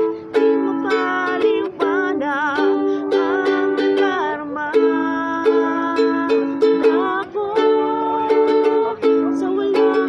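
A ukulele strummed in chords while a voice sings a Tagalog ballad over it, with vibrato on the held notes.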